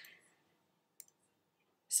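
Mostly quiet, with one short, sharp click about a second in.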